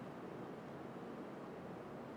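Faint, steady background hiss of room tone; no distinct sound.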